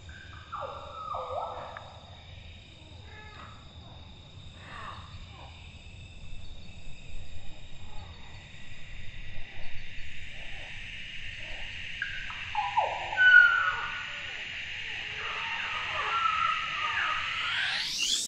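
Tropical evening ambience: a steady, high-pitched insect chorus, with a few falling animal calls over it, the loudest about thirteen seconds in.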